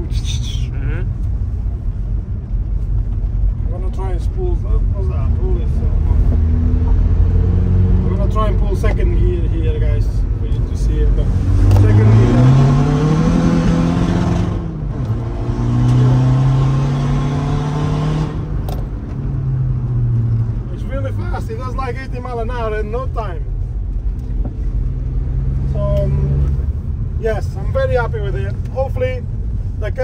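VW Caddy's swapped-in 1.9 TDI PD150 four-cylinder diesel heard from inside the cab, pulling hard: about twelve seconds in the engine note climbs, dips briefly and climbs again, with a strong rushing hiss from the GTB2060VKLR turbo until the driver backs off about eighteen seconds in. After that the engine settles into a lower, steady run.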